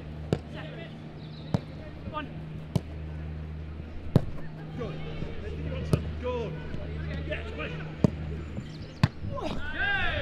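Footballs being kicked hard in a shooting drill: about seven sharp thuds of boot on ball, one every one to two seconds, over a steady low hum.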